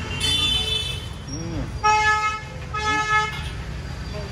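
Vehicle horns honking in street traffic: a fainter high toot near the start, then two half-second honks about a second apart. Steady traffic rumble runs underneath.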